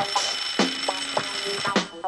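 A telephone bell ringing steadily for nearly two seconds, cutting off just before the end, over background film music.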